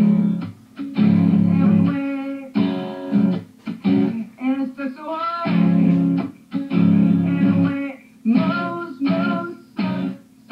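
Acoustic guitar strummed in a steady rhythm, with a young man singing along in a comic song, heard through a computer's speakers from a live stream.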